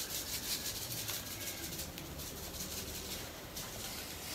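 Faint scratchy rubbing as a stock cube is crumbled between the fingers over a pot of meat.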